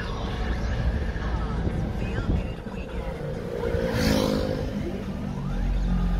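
Car driving at low speed, its engine and tyre noise heard from inside the cabin, with the car radio playing underneath. A brief rushing sound comes about four seconds in, and the low rumble grows heavier near the end.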